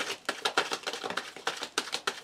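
A tarot deck being shuffled and handled in the hand, a quick, irregular run of crisp card clicks and slaps.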